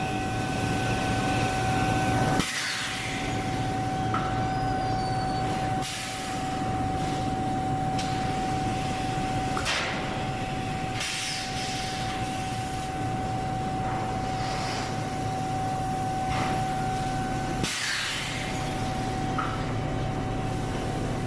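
Foundry molding-line machinery running with a steady hum and a constant whine, broken by several short hisses.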